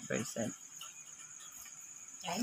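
Faint, steady, high-pitched trill of crickets under a pause in speech.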